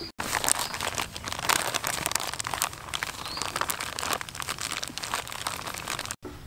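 Plastic flour bag crinkling and rustling as it is handled, opened and tipped out, with many sharp crackles.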